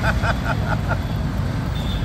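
A steel ladle stirring a large steel pot of pani, clinking against the pot in a quick, even run of about half a dozen pings in the first half, over a steady low rumble of street traffic.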